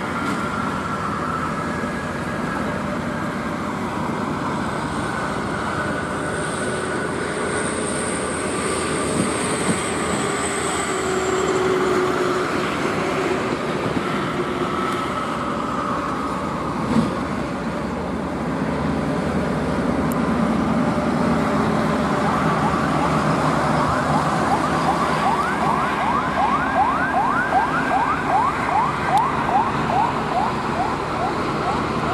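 Heavy trucks and traffic passing on a highway, with a siren-like wailing tone over the engine and tyre noise. For the last several seconds a fast, evenly repeating rising yelp takes over.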